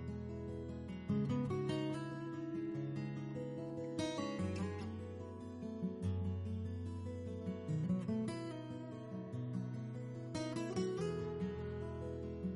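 Background music on acoustic guitar, strummed chords and plucked notes changing every second or two.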